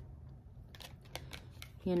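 Tarot cards being handled on a table: a short run of light clicks and taps as cards are picked up and shuffled over, starting about three-quarters of a second in.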